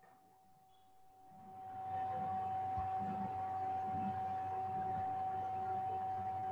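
A steady high-pitched tone with a fainter lower tone beneath it, over a hiss of background noise that swells in during the first two seconds and then holds level.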